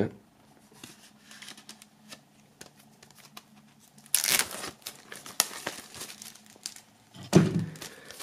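Plastic shrink-wrap film on a CD case being slit with a serrated folding knife, then torn and peeled off, crinkling throughout. The loudest tearing and crinkling comes about four seconds in.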